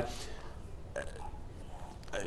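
A pause in the talk: low, steady studio room noise, with one brief faint sound about halfway through.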